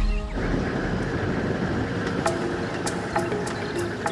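Background music over a steady low noise.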